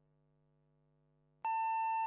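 A faint steady electrical hum, then about one and a half seconds in a single loud electronic beep, one steady high tone lasting about half a second, marking the start of a rhythmic gymnastics routine's music.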